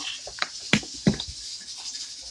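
A few light clicks and knocks, scattered through the first second or so, over faint kitchen room noise.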